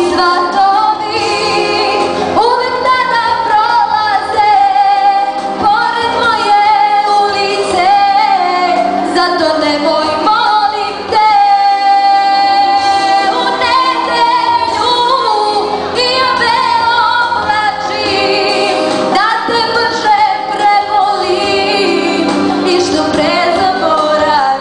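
A girl singing a ballad live into a handheld microphone over instrumental accompaniment, holding one long note about halfway through.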